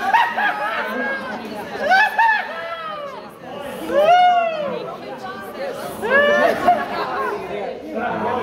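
People's voices making rising-and-falling vocal sounds without clear words, the loudest a long arching cry about four seconds in.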